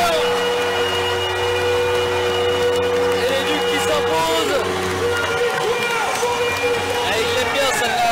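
Ice hockey arena goal horn sounding one long, steady multi-tone chord, signalling a home goal. It stops about four to five seconds in, and shouting voices and crowd noise come through.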